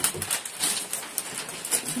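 Sheets of gift wrapping paper rustling and crinkling in a run of irregular crackles as they are unrolled and folded around cardboard boxes.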